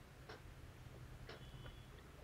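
A clock ticking faintly, once a second, over a low steady hum.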